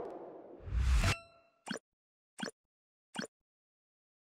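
Sound effects of an animated TV-channel logo ident. A rising whoosh ends in a deep hit with a short ringing chime about a second in, followed by three short pops evenly spaced under a second apart.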